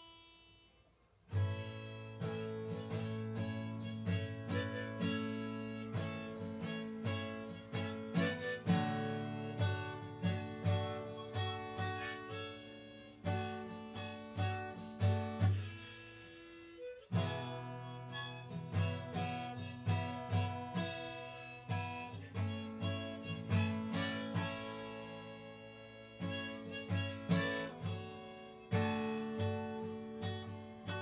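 Acoustic guitar strummed in a steady rhythm with a harmonica played over it from a neck rack, starting about a second in. The playing drops out briefly a little past halfway and then resumes.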